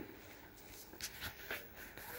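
Faint shuffling with a couple of soft clicks, about a second and a second and a half in.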